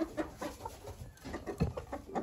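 Hens clucking, a series of short, soft clucks in quick irregular succession.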